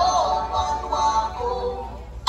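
Music playing through stacked outdoor sound-system speakers: a melodic line in the mid range, with little bass.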